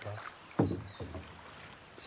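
Quiet water sounds of a flat-bottomed marsh punt being pushed along a canal with a pole.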